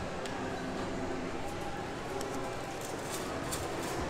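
Shopping-mall background noise: a steady hum with faint distant chatter, and a few light clicks scattered through, most of them in the second half.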